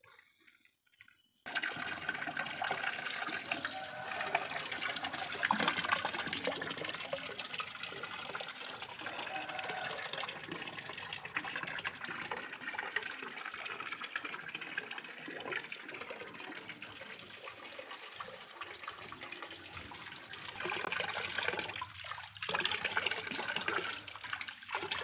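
Water from an outdoor tap pouring into a steel tub already full of water. It starts about a second and a half in, runs steadily, and grows louder near the end.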